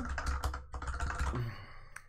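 Computer keyboard keys tapped in a quick run of clicks that thins out about a second and a half in.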